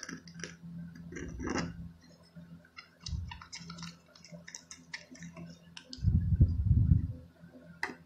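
Popsicle stick stirring sticky glue-and-toothpaste slime in a small plastic cup: a run of quick sticky clicks and smacks, thickest in the middle, with a loud low rumble about six seconds in.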